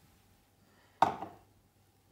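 A single sharp knock with a brief metallic ring about a second in: a stainless steel milk-frothing jug set down on a hard worktop.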